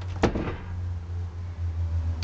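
A single sharp knock about a quarter second in, over a steady low hum.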